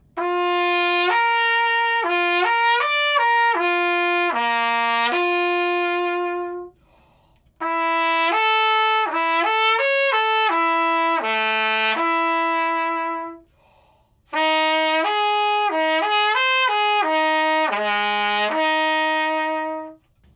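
Trumpet playing a slurred lip-slur (flexibility) exercise, moving up and down between harmonics without valves in three phrases of about six seconds each, with short breaths between them. Each phrase climbs, dips to a low note and settles on a long held note, and each one sits a little lower than the one before.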